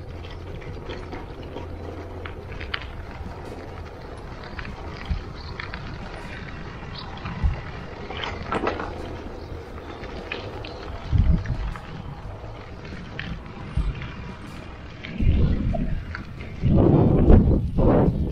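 Wind rumbling on the microphone of a camera riding on a bicycle, with light clicks and rattles from the bike rolling over cobblestones and gravel. Stronger gusts swell up in the last few seconds.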